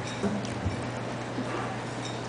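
A few light knocks in the first second, over a steady low hum in the hall.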